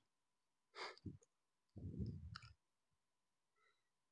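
Near silence in a pause of talk, with a faint breath about a second in, a soft exhale about two seconds in, and a faint click.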